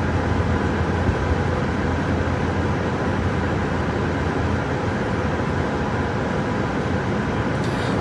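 Steady car noise heard from inside the cabin: an even engine and road hum that stays unchanged throughout.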